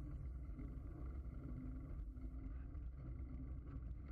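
Steady low rumble of wind buffeting and road vibration picked up by a handlebar-mounted camera on a road bike rolling along asphalt.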